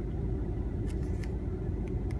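Steady low rumble inside a car cabin, with a few faint ticks of a paper booklet being handled.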